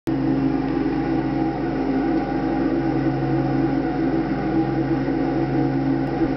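The 20 hp engine of a 2007 MTD Yard Machines riding lawn mower running at a steady speed.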